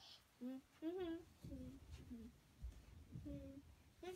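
A little girl softly humming a made-up tune in a string of short 'hmm' notes, some sliding up and down in pitch.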